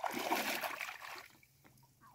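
Shallow muddy water splashing and sloshing as hands grope through it, loudest in the first second and then dying away.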